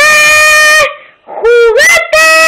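A child singing wordless long held notes, very loud: one steady note for nearly a second, then a lower note that slides upward near the end.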